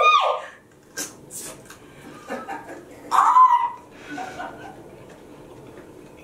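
Women's voices as they bite into and chew scotch bonnet peppers. A short rising cry comes right at the start, a few brief hissing sounds about a second in, and a loud hummed vocal sound about three seconds in, before it goes quiet.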